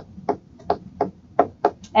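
Stylus tapping on a tablet screen while handwriting: a string of short, sharp taps, about four a second and unevenly spaced.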